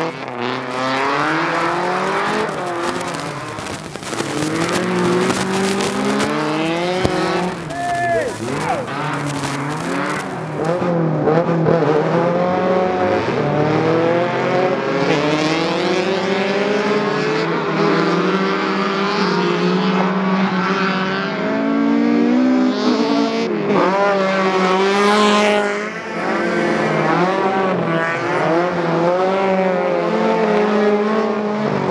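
Race cars running flat out on an ice circuit, their engines revving up and down again and again as the drivers work the throttle through drifts, with more than one car audible at once.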